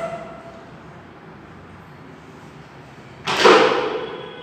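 A short, loud rush of hissing noise a little over three seconds in, lasting under a second, over quiet room tone.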